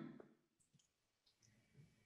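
Near silence: a gap between two voices on a video call, with the end of a word fading out at the very start.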